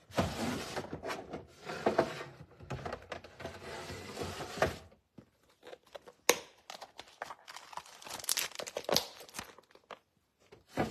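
Rummaging through a box of packaged craft flowers: crinkling and rustling of plastic packaging for about five seconds, then scattered clicks and crackles, with one sharp click a little after the middle.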